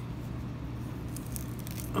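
Faint handling sounds, a few light clicks, as a stainless steel wristwatch on a leather strap is turned over in the hands, over a steady low hum.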